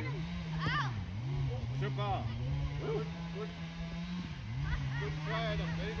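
Scattered shouts and calls from young players over a steady motor drone that dips in pitch briefly about a second in and again a little past four seconds.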